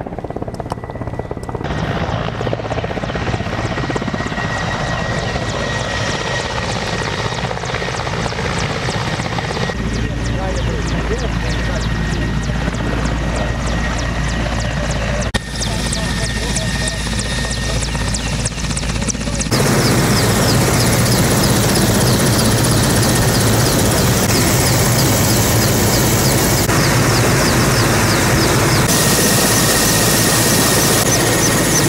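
Military helicopter running on the ground with its rotors turning, a steady engine-and-rotor noise that gets clearly louder about two-thirds of the way in.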